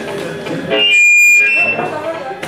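Voices chattering, cut across about a second in by a loud, high-pitched steady tone that lasts about a second.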